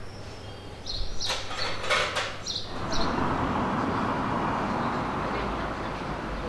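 Street ambience: short, high bird chirps and a few light clicks over the first few seconds, then a steady wash of street and traffic noise from about three seconds in.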